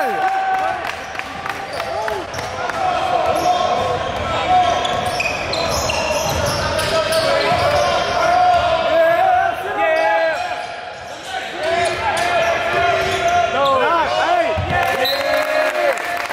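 Basketball being dribbled on a hardwood gym floor during play, with sneakers squeaking in short rising and falling squeals and voices echoing in the hall.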